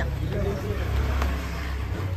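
A motor vehicle's engine running with a low, steady rumble, under people's voices.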